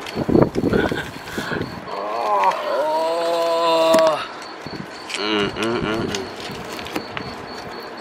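A man's drawn-out wordless vocal sound, gliding up and then held steady for about a second and a half midway. Shorter wordless vocal sounds follow, with some rustling and crackling in the first second or so.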